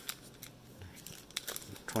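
Sealed foil trading-card pack wrappers crinkling as the packs are shuffled from front to back in the hands, giving light, scattered crinkles and clicks.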